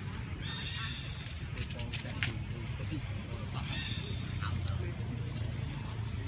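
A baby monkey giving short, high-pitched calls, two of them, about half a second and nearly four seconds in, the distress calls of a hungry infant. A few sharp clicks come in between, over a steady low rumble.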